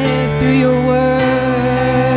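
Slow worship music: a female voice singing long held notes with a slight vibrato over sustained Yamaha MO keyboard chords. The chord changes a little over a second in.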